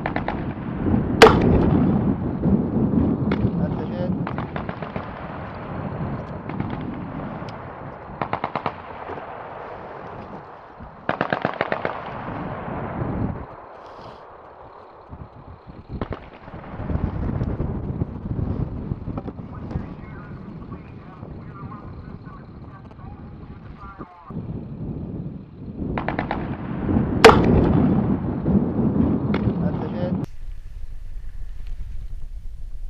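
M320 40 mm grenade launcher fired twice, a sharp report about a second in and another near the end, each followed by a few seconds of low rumbling. Between the two shots come two short bursts of rapid automatic fire.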